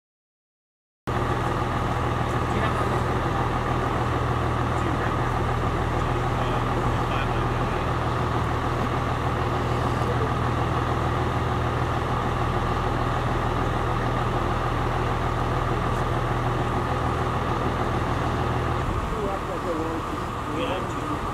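A vehicle engine idling steadily close by: a deep, even hum with a constant higher tone above it. The deep hum drops away near the end.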